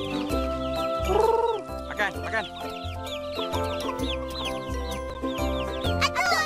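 Chickens clucking over background music with sustained notes and a regular bass beat.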